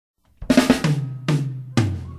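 Opening of a song: a band's drum kit and bass come in about half a second in with a quick cluster of hits, followed by two single accented hits, each with a held bass note under it.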